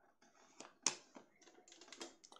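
Quiet computer keyboard typing: an irregular run of key clicks, the sharpest about a second in.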